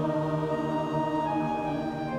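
Large choir singing long held notes of a slow hymn with pipe organ accompaniment; the chord shifts near the end.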